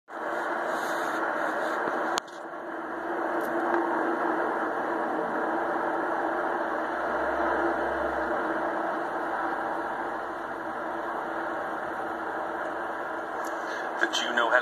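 Military helicopters flying over in formation: a steady rotor-and-engine rumble with a hum, swelling in the low end a little past the middle. A sharp click and a brief dip about two seconds in.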